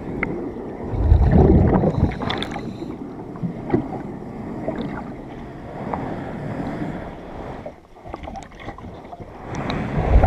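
Underwater sound of a diver working against a boat hull: a loud low rumble of exhaled breath bubbles from the diver's regulator about a second in and again at the end. Scattered clicks and rubbing noise in between.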